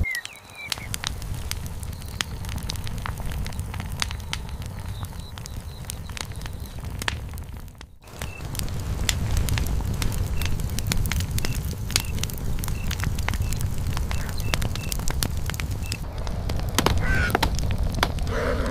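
Large wood fire crackling, with a steady low rumble of flames and many sharp pops. Faint short high chirps repeat in the background.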